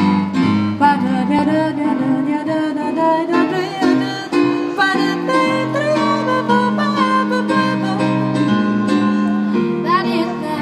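A woman and a young girl singing a song through a microphone and PA, with live keyboard accompaniment holding steady chords under the melody.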